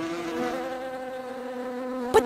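Swarm of bees buzzing around a hive as a cartoon sound effect: a steady, even drone.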